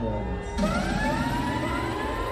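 A live reggae band playing on stage, with a long pitched wail that rises slowly in pitch over the music from about half a second in.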